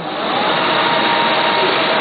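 Duplo System 4000 twin-tower paper collator starting a run: a loud, steady whir of its motors and blowers comes up over the first half second, with a faint high tone running through it.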